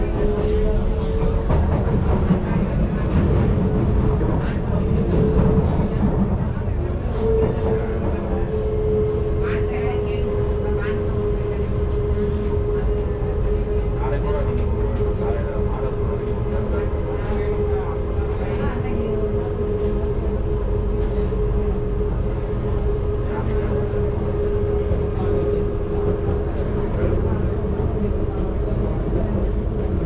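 Singapore MRT train running at speed, heard from inside the car: a steady low rumble from the wheels and track, with a sustained motor whine. The whine rises a little in the first seconds, then holds at one pitch.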